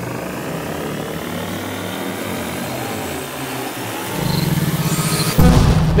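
A time-travel transition sound effect: a whooshing sweep that rises slowly in pitch, joined about four seconds in by a rapid low pulsing throb, and ending in a loud hit near the end.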